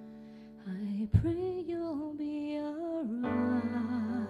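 A piano chord dies away, then a solo voice begins singing a slow melody about two-thirds of a second in. There is a single sharp thump about a second in. Fuller piano chords with a bass note come back under the voice near the three-second mark.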